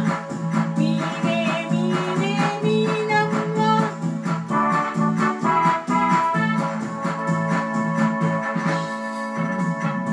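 Electronic keyboard playing an organ-like melody over a steady drum beat.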